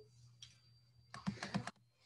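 A quick flurry of sharp clicks at the computer about a second in, lasting about half a second, with a single faint click shortly before it.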